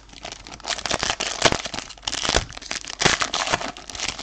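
Foil trading-card pack wrapper crinkling, a dense run of small sharp crackles as it is handled and pulled open.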